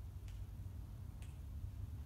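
Quiet room tone with a steady low hum, broken by two faint sharp clicks about a second apart.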